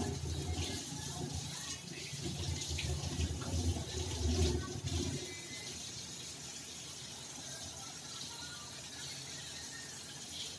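A cat eating wet food from a plastic tray: wet chewing and licking sounds. A low rumbling noise runs through the first half and eases off about five seconds in.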